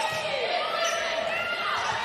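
Athletic shoes squeaking on the indoor court floor during a volleyball rally: several short, high squeaks that overlap and slide in pitch, over the steady background noise of the arena.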